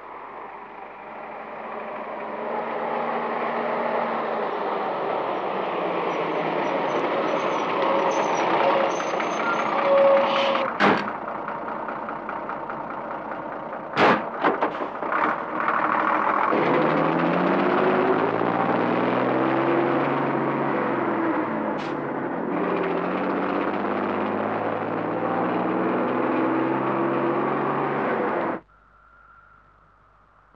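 Bus engine running, growing louder over the first few seconds, with a few sharp knocks around the middle. In the second half the engine note rises and falls repeatedly, and the sound cuts off abruptly near the end.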